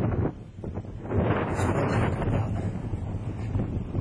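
Wind buffeting the microphone: a rough, low rumbling noise that drops briefly about half a second in, then comes back louder.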